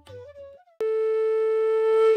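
Background music: one track fades out, and after a brief gap a flute comes in suddenly a little under a second in, holding one long steady note.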